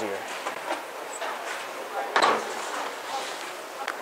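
Bowling alley background noise, with one short, sharp clattering knock about two seconds in.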